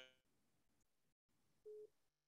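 Near silence, broken by one short, faint steady beep near the end.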